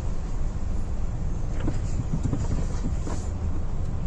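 Inside the cab of a tractor truck on the move: the steady low rumble of the diesel engine with tyre hiss from the wet road. A few short, faint ticks come partway through.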